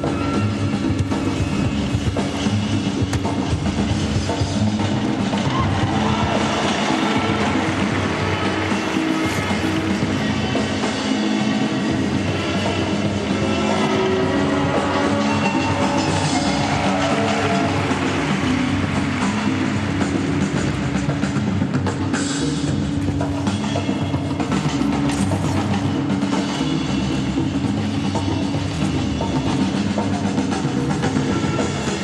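Music with drums accompanying an ice dance exhibition program, loud and continuous, with strong held bass notes.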